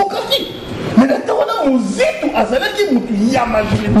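A person talking with chuckling laughter mixed into the speech.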